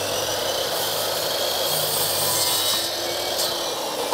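INGCO electric mitre saw running and cutting across a solid kohu hardwood floorboard, a steady loud whine with a faint motor hum, stopping near the end.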